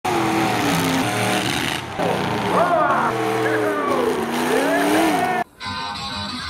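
Engines of full-size demolition derby cars revving, their pitch rising and falling, over a dense wash of arena noise. The sound cuts off suddenly about five and a half seconds in, and quieter intro music begins.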